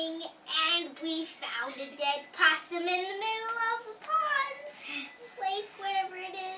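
Young girls singing, with long held notes and slow pitch glides broken by short pauses.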